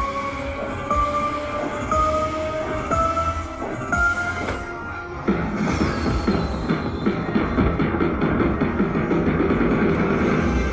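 Slot machine bonus sounds: a tone that steps up in pitch about once a second as the combined feature win counts up. From about five seconds in comes a louder, busy jingle with a falling sweep as the coin-shower win animation starts.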